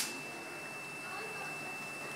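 A steady thin high-pitched tone over faint hiss. The sharp burst of the paper rocket's launch cuts off right at the start.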